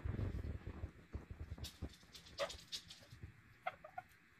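A red-lored Amazon parrot chewing a piece of burrito with its beak: scattered small crunching clicks, with a low rumble in the first second.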